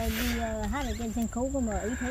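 A person laughing softly, a quick run of rhythmic giggles of about five or six pulses a second.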